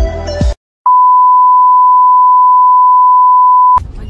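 Background music cuts off about half a second in. After a brief silence, a loud, steady electronic beep at one high pitch, like a test tone, holds for about three seconds and stops abruptly.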